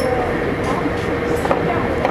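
Steady hum and rumble of factory machinery running, with a constant tone over it and one sharp click about one and a half seconds in.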